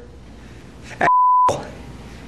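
A TV censor bleep covering a swear word: one steady single-pitch beep about a second in, lasting about half a second, over faint room noise.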